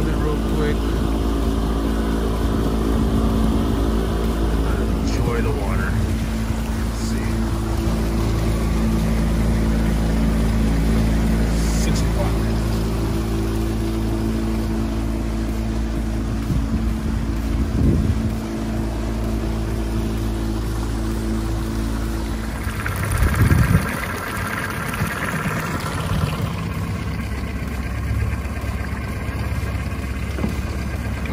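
Small outboard motor running steadily at trolling speed. About 23 seconds in its steady note breaks off with a short burst of noise, and a weaker, changed engine sound follows.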